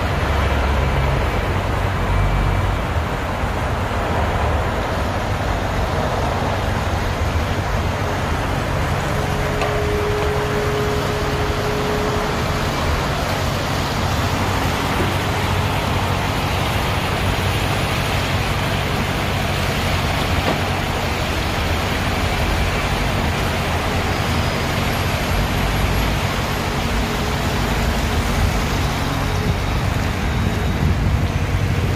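Steady roar of road traffic with a low rumble, heard beneath a concrete overpass.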